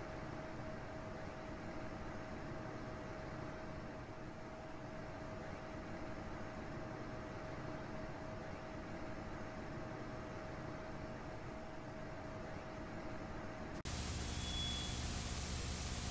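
Faint hiss with a steady low hum. Near the end it cuts abruptly to louder static-like white noise with one short high beep, matching a glitching picture.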